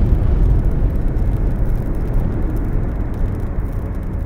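A deep, loud rumble that slowly fades: the drawn-out tail of a heavy boom sound effect.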